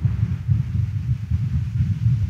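A low, uneven rumble that pulses in loudness, with almost nothing higher-pitched above it.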